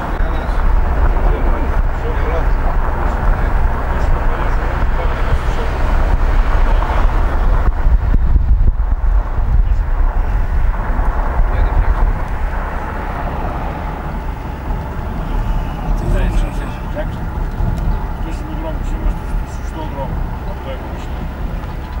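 Car cabin noise while driving: a steady low engine and road rumble with tyre noise, louder in the first half and easing off after about twelve seconds.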